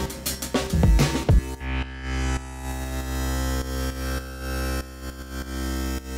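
A drum loop for about a second and a half, then a sustained, bass-heavy chord whose level pulses rhythmically as Ableton Live's Gate, keyed by the drums, opens and closes. With the Floor set around −13 dB, the chord is turned down rather than silenced between pulses.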